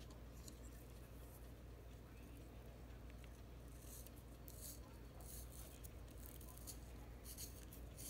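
Faint scraping of a pencil-style applicator pen being twisted in a small plastic handheld sharpener, in a few short strokes in the second half.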